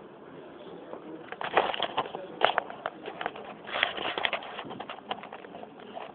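Handling noise from a camera being picked up and moved over a rubber gym floor: bursts of quick clicks, knocks and scrapes in two or three clusters near the middle, with lighter ticks after.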